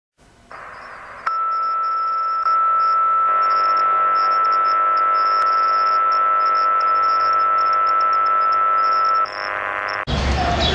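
A steady electronic drone laid over the title card. It gets louder in a few steps during the first seconds, then holds one high tone over a chord for most of its length and drops off shortly before the end.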